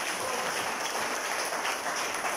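Audience applauding steadily, many hands clapping.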